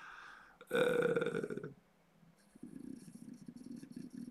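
A man's drawn-out hesitation "uh", held at one pitch for about a second, followed by faint low noise.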